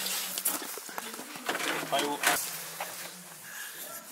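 Quiet, indistinct talk with a brief spoken phrase about halfway through, over a faint steady hum and a few light clicks.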